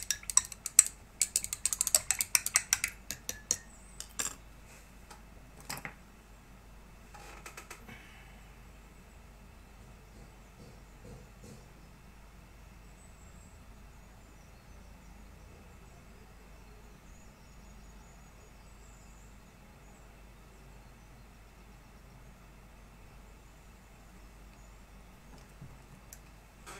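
Clicking, tapping and brief scraping as a paintbrush and painting gear are handled and put down, with a few separate knocks up to about eight seconds in. After that there is only faint, steady room noise.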